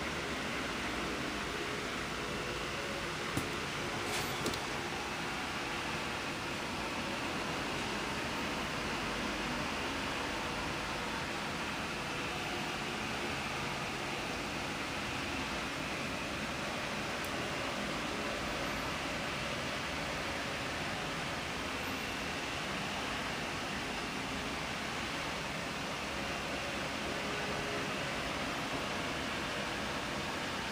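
Steady background hiss of room noise, like a fan or air conditioning, with a faint hum and a few small clicks about three to four seconds in.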